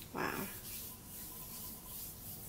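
A soft, breathy spoken "wow" about a quarter second in, then only a faint steady hiss of room noise.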